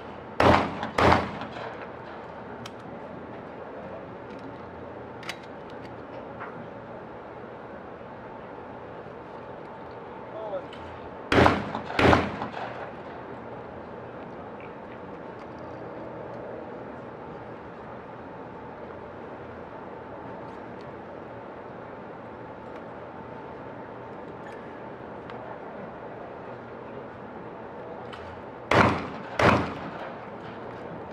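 12-gauge over-under shotguns firing at skeet doubles: three pairs of loud shots, with the two shots of each pair well under a second apart. The pairs come near the start, about eleven seconds in, and near the end.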